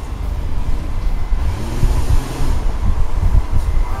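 Open-top Ford Mustang V6 convertible on the move: wind buffeting the microphone over a steady low rumble of road and engine noise, with a brief gust of hiss about two seconds in.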